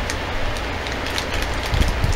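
Scissors snipping into a foil blind-bag packet, a few faint crisp cuts over a steady low rumble of background noise.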